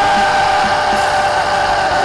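A sustained keyboard chord holding steady over the noise of a large congregation.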